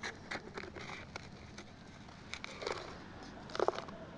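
Small plastic scoop scraping and tapping through loose, crumbled soil in a cardboard box: faint scattered ticks and scrapes, with a short cluster of louder clicks about three and a half seconds in.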